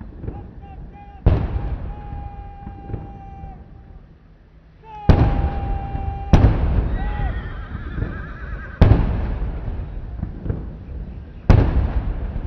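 Artillery guns firing a ceremonial gun salute: five heavy booms at uneven intervals, each followed by a long rolling echo. Drawn-out held voice-like calls are heard between the first shots.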